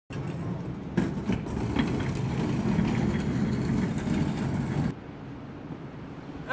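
Orange plastic trash bin on a caster dolly rolling over concrete: a steady rumble from the wheels with scattered rattles and knocks. It cuts off suddenly about five seconds in, leaving quieter ambience.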